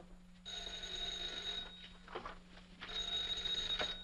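Desk telephone bell ringing twice, each ring about a second long with a pause between.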